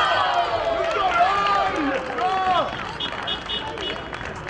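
Several voices shouting and cheering at once just after a goal, loudest in the first two and a half seconds and then dying down. Near the end come a few sharp claps and four short high pips in quick succession.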